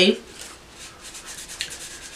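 Soft, steady rubbing of a tissue against skin, wiping at a makeup swatch that isn't coming off.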